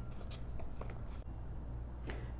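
Faint rustling and scraping of paper being folded and creased by hand, a few short strokes in the first second before it goes quieter, over a low steady hum.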